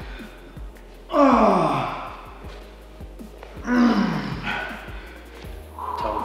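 A man groaning in pain twice after a knee to the groin. Each groan is loud and falls in pitch over about a second. Background music plays underneath.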